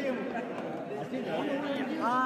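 Chatter of several men talking over one another.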